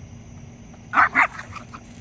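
Chihuahua mix barking twice in quick succession, two sharp, loud barks about a second in, directed at the larger dog.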